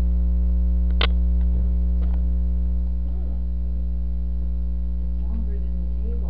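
Loud steady electrical mains hum with its stack of overtones running through the recording, with a single sharp click about a second in.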